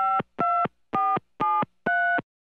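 Touch-tone telephone keypad beeps (DTMF): a run of short dual-tone key tones, about two a second, each a different pair of pitches, as if a number is being dialed.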